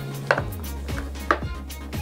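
A few sharp clicks and knocks of small plastic toy ponies being handled and set down against a clear acrylic display case.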